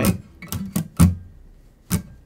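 Steel-string acoustic guitar strummed with a pick in short, choppy strokes that stop almost at once. The strings are palm-muted on most strums, giving a percussive down-mute-mute-up pattern. There are about five strokes, the loudest near the end.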